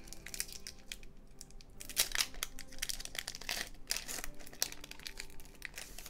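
Foil wrapper of a Pokémon booster pack crinkling and tearing as it is ripped open by hand, in a run of irregular crackles with the sharpest ones about two seconds in and again around the middle.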